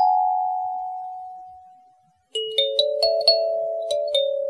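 Kalimba music: the last notes ring on and fade to silence about two seconds in, then a new tune starts with a run of plucked notes.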